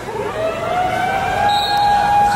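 A siren tone that rises in pitch for about a second and then holds steady.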